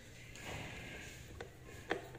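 Faint scraping and handling noise of a woofer being worked loose from a small speaker cabinet by hand, with two small clicks near the end.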